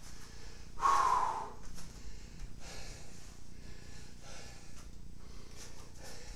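A man breathing hard after a set of dumbbell exercises: a loud exhale about a second in, then quieter breaths about once a second.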